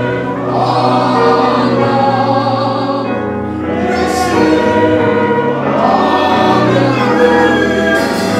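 A group of voices singing a gospel hymn together, holding long notes, with a short break between phrases about three seconds in.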